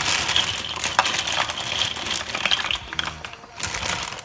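Dry short tube pasta, a shorter rigatoni, pouring from a plastic bag into a pot of boiling water: a quick run of hard little clicks and clatters as the pieces knock against each other and the pan, thinning out near the end, over the bubbling of the water.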